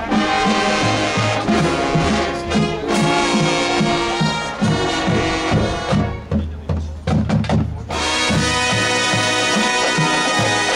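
Marching band playing, with brass over a steady low pulse of bass notes and drums. About six seconds in the high brass drops away, leaving low hits for a couple of seconds, and the full band comes back in near the eight-second mark.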